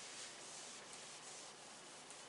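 Faint rubbing of a cloth wiped across a whiteboard to erase marker writing, in a few soft strokes.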